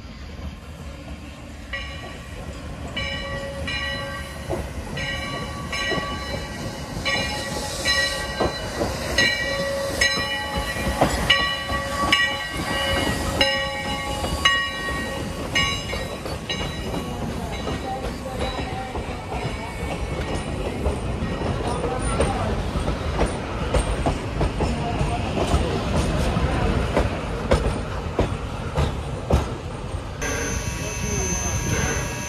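Sierra Railway No. 3, a 4-6-0 steam locomotive, approaching with its bell ringing steadily about once a second. The bell stops about halfway through. The engine and its coach then roll past, wheels clicking over the rail joints in the last several seconds.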